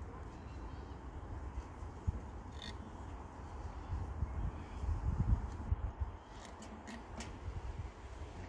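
Low, uneven rumble of wind on the microphone, with a few short, sharp sounds close together near the end.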